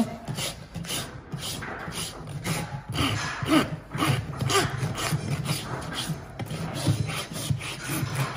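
Farrier's hoof rasp scraping back and forth across the sole and wall of a trimmed horse hoof in quick, even strokes, about two to three a second, levelling the bottom of the foot.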